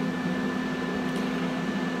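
Steady mechanical hum of a running cooling fan: a constant low drone with a faint high whine over an even hiss.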